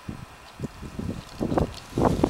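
Wind buffeting the microphone in uneven gusts, growing stronger near the end.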